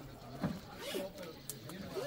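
Small plastic bag rustling and crinkling as it is handled, with faint voices in the background.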